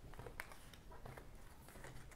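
Round oracle cards being slid and gathered up off a tabletop: faint scattered clicks and scrapes of card stock, with one sharper tap about half a second in.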